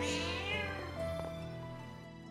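A single cat meow, falling in pitch over the first moment, over soft background music that is fading out.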